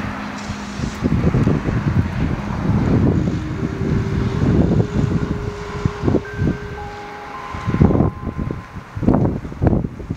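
Outdoor street ambience with wind buffeting the microphone in uneven low gusts, and a few long held notes of quiet background music coming in from about three seconds in.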